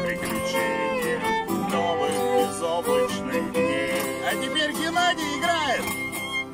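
Acoustic fiddle and acoustic guitar playing an instrumental break in a bluegrass-country style, the fiddle carrying the melody and sliding down in pitch near the end.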